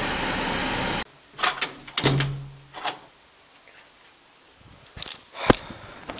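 About a second of steady noise that cuts off suddenly. Then a quiet small room with a few scattered knocks and clicks, a brief low hum about two seconds in, and two sharp clicks near the end.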